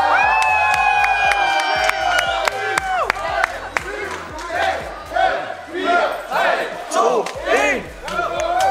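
A crowd of people cheering and shouting: one long drawn-out cheer held for about three seconds, then a scatter of short whoops and calls from many voices.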